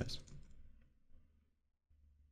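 A few faint computer keyboard keystrokes in the first second, then near silence.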